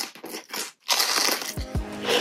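Close-miked crunching eating sounds, then music coming in about one and a half seconds in with two low falling bass hits.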